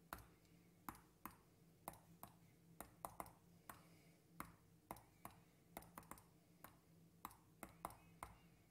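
Faint computer mouse clicks, short and sharp, coming irregularly about two or three times a second as buttons on an on-screen calculator are pressed, over a faint steady electrical hum.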